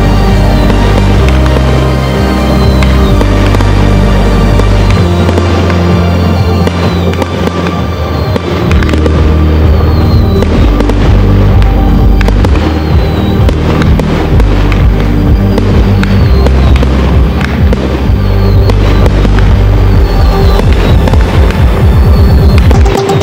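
Fireworks display: aerial shells and fountains firing, with many sharp bangs and crackles, thicker in the second half, over loud music with a heavy, steady bass line.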